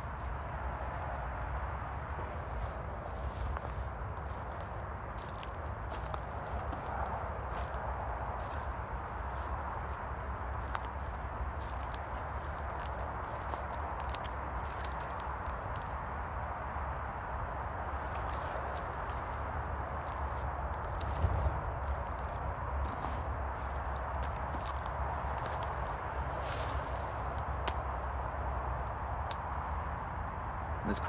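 Footsteps pushing through dry undergrowth and leaf litter, with many small twig snaps and crackles, over a steady low rumble.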